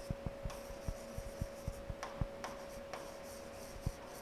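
A marker pen writing on a board: a quick, irregular run of short strokes and taps as a word is written out, over a faint steady hum.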